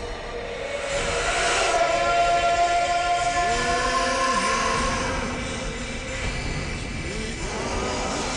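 Dramatic background score of long held notes, with a few sliding, arching melodic phrases in the middle and near the end.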